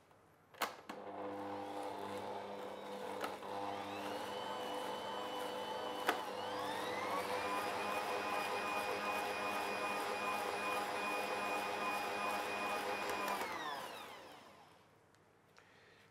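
Electric stand mixer motor switched on with a click and running, beating quark into a butter-and-sugar cake batter in a steel bowl. Its whine steps up to a higher pitch as the speed is turned up about six seconds in, holds steady, then winds down as it is switched off near the end.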